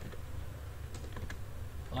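A handful of separate computer keyboard keystrokes over a steady low hum, the sound of a short phrase being typed.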